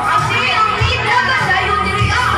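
A woman calling out over a microphone through loudspeakers, with other voices in the room and music playing underneath.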